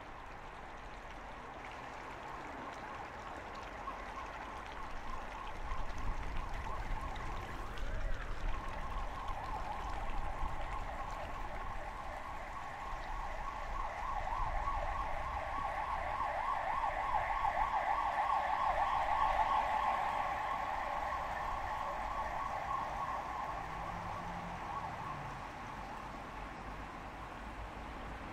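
An emergency vehicle's siren wailing with a rapid waver, growing louder over the first twenty seconds and then fading away.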